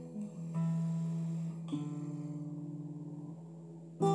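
Acoustic guitar played softly: a few notes plucked near the start and a chord before two seconds, each left to ring and fade away.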